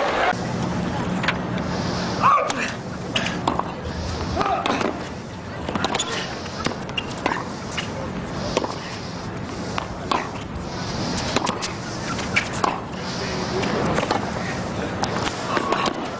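Tennis rally on an indoor court: sharp racket-on-ball strikes and ball bounces at irregular intervals of about a second, with shoes squeaking and scuffing on the court surface over a crowd murmur.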